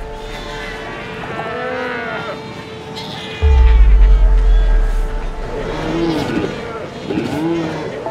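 A colony of Cape fur seals calling: many short, overlapping calls that rise and fall in pitch, from pups and adults. Under them runs music with a steady drone, and a deep bass comes in loudly about three and a half seconds in.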